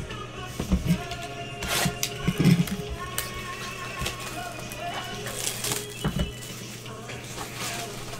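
Gloved hands handling and opening a cardboard trading-card hobby box: irregular taps, knocks and scrapes of cardboard, over background music.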